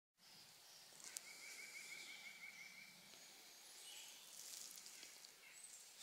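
Faint woodland ambience: a bird trills evenly for under two seconds about a second in, with thin, high chirps from other birds around it. A single small click comes just after the first second.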